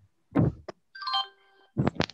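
A short electronic chime: several steady tones sounding together for about half a second, about a second in. Dull thuds and a click come just before it, and two more thuds come near the end.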